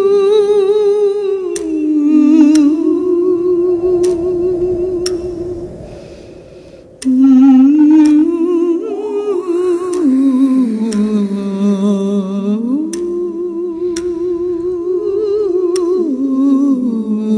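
Soundtrack music: a voice humming a slow melody of long held notes with vibrato, moving up and down in small steps, over faint regular ticks. It fades away about five seconds in and comes back abruptly about seven seconds in.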